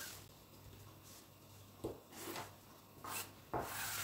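Faint rubbing and scraping of hands and a tape measure over polyester lining fabric as it is measured and marked with tailor's chalk, a few soft strokes at first and a louder rub near the end.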